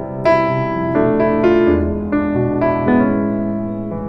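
Piano-sound keyboard playing a series of sustained chords that change several times: a D minor 7 chord taking the progression from A major back into C major.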